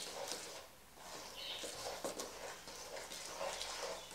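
Hands mixing a wet, sticky sourdough roll dough in a stainless steel bowl: faint, irregular squishing with small knocks, with a brief lull a little under a second in.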